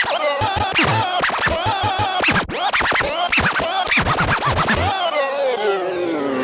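Electronic dance music in a DJ mix, cut up by fast up-and-down pitch swoops like record scratching. Near the end the bass beat drops out under a long falling sweep, a transition before the beat comes back.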